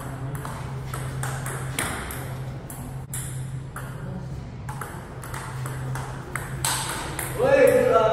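Table tennis ball clicking back and forth off paddles and table in a quick rally, over a steady low hum. Near the end a person's voice, a brief loud exclamation, is the loudest sound.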